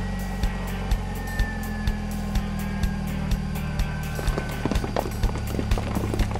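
Background music with a steady drum beat about twice a second, over the steady low hum of an animated police car's engine.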